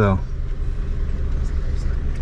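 Classic Range Rover's four-cylinder VM diesel engine idling steadily, a low even rumble.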